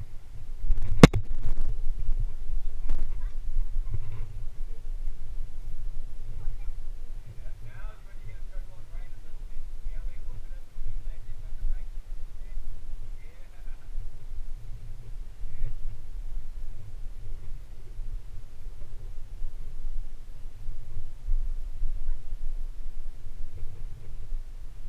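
Steady, uneven low rumble on the microphone of a climber's point-of-view camera, with one sharp knock about a second in and faint voices a little after the middle.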